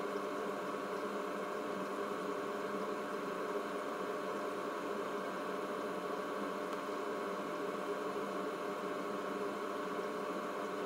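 A steady machine hum made of several steady tones, unchanging throughout.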